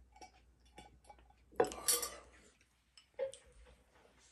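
Light taps and clinks of tableware: several small ticks, and a louder clatter about a second and a half in.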